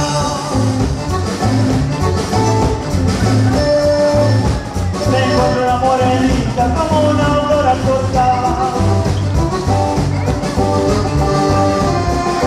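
Latin dance-band music with a steady beat and a pitched instrumental melody, in a mostly instrumental stretch between sung lines of a Spanish-language song.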